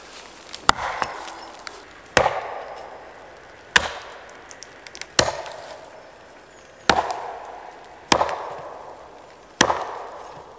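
Axe blows chopping into the base of a birch trunk close to the ground, seven strikes about a second and a half apart, each with a short ringing tail.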